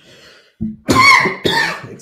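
A man coughs into his fist close to the microphone. There is a short cough about half a second in, then two loud coughs in quick succession.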